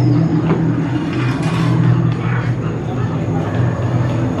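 Low, steady droning ambient soundtrack from a haunted scare zone's speakers, with indistinct voices of people nearby.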